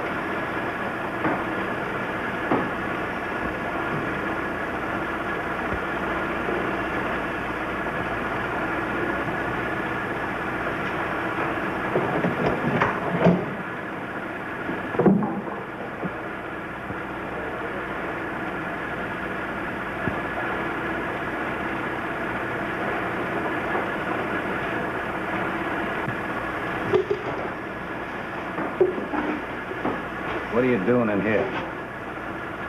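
Shop machinery running with a steady, even drone, with a few short, louder knocks about halfway through and again near the end.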